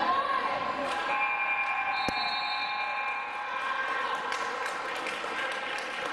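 Basketball scoreboard buzzer sounding one steady electronic tone for about two seconds, starting about a second in, marking the end of a quarter, over voices in the gym.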